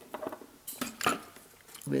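A handful of light clicks and taps as a small metal-cased DC motor and parts are picked up and handled on a wooden desktop.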